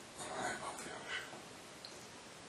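A man's faint whispered speech, a few soft words about a quarter of a second to a second and a half in, over low hiss.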